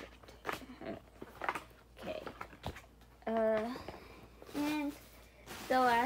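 Rustling and light clicks of an album's paper booklet, photo cards and packaging being handled and packed back into its box. Two short wordless vocal sounds come about halfway through.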